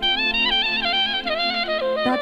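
Live band playing a traditional Balkan folk tune. A clarinet-like lead melody comes in suddenly and steps downward over a steady held note.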